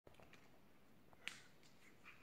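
A single sharp click a little over a second in, against near silence, with a few faint ticks before it.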